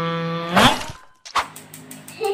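A held note at one steady pitch ends about half a second in with a brief loud burst. A sharp click follows just under a second later, then faint rapid ticking.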